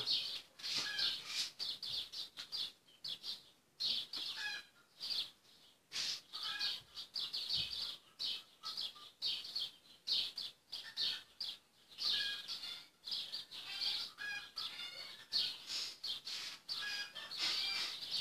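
Small birds chirping: a near-continuous run of short, high chirps with brief pauses between runs.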